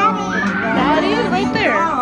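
Young children's voices, high-pitched calls and chatter, over music playing in the background.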